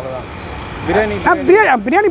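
A man's voice speaking close to the microphone, starting about a second in, over a steady background of street traffic noise.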